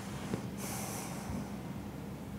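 A short, sharp breath through the nose picked up close by a clip-on microphone, about half a second in, over a steady low hum of the room.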